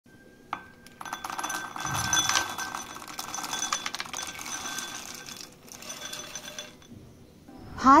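Raw peanuts poured into a glass bowl, a dense rattle of nuts hitting the glass and each other for several seconds. It breaks off briefly and ends with a last short pour.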